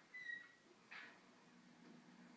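Near quiet, broken by one short, thin high squeak from a small dog, a whimper, a fraction of a second in, and a soft rustle about a second in.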